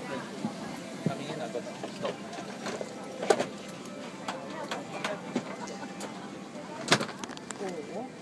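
Murmur of passengers talking in an airliner cabin during boarding, with scattered sharp knocks and clicks. Two louder knocks come about three seconds in and about a second before the end, the second the loudest.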